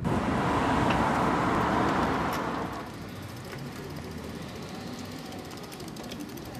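Road traffic noise: a vehicle passing, loud for the first two to three seconds and then fading away, leaving a quieter steady street background.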